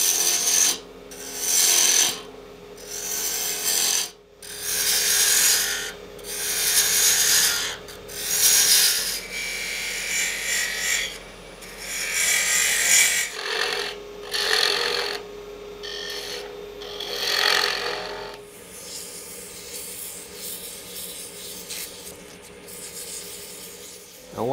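Hand turning tool cutting a spinning cocobolo stopper on a wood lathe: a run of scraping cuts, each about a second long with short pauses, over the lathe's steady hum. Near the end the cutting stops and a quieter, even rubbing follows, as the stopper is sanded.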